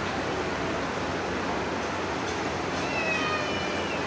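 A steady background hiss. About three seconds in comes a brief high-pitched cry with a slight downward slide in pitch, like a meow.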